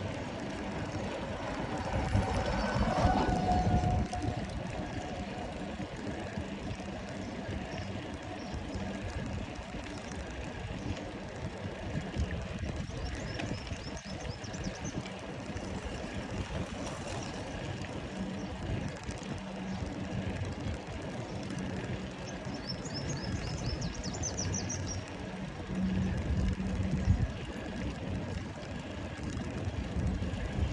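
Steady rumbling noise of a bicycle ride: wind on the microphone and tyres rolling over paving blocks. A louder passage comes about two to four seconds in, and a few high chirps are heard in the middle and later on.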